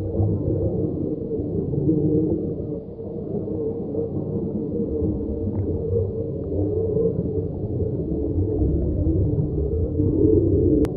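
A low, continuous droning sound bed with a few sustained tones, dipping briefly about three seconds in.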